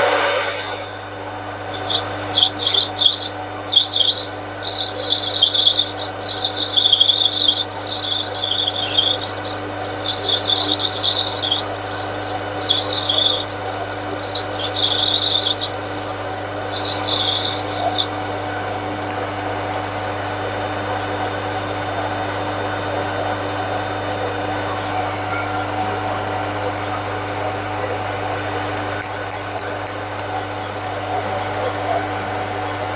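Metal lathe running with a steady motor hum while the turning tool takes a light finishing cut along a brass bar. A scratchy cutting noise comes and goes for the first fifteen seconds or so, then the lathe runs on steadily with the cut finished.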